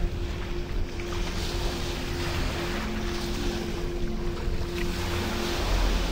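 Ocean surf and wind rushing steadily, with a low rumble and a steady low hum held underneath.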